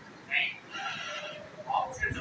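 High-pitched human vocal sounds: a short breathy sound, then a high call lasting under a second, and a brief lower voice sound near the end.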